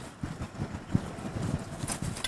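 Wind buffeting the camcorder microphone: an irregular low rumble, with a single knock about a second in.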